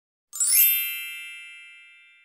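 A single bright electronic chime, the outro sting over the end card, struck about a third of a second in and ringing out as it fades over about two seconds.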